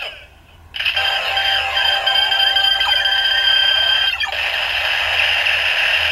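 DX Ziku-Driver toy belt playing its electronic finisher sound effect through its small speaker, with several held beeping tones over a music-like backing. It starts after a brief quiet moment just under a second in.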